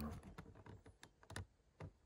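Faint, irregular light clicks of a white paint marker's tip dabbing on a plastic keyboard keycap, the key rattling a little under the pressure, with the sharpest click about one and a half seconds in.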